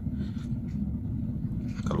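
Pellet burner running, a steady low rumble from the fire burning up its riser tube.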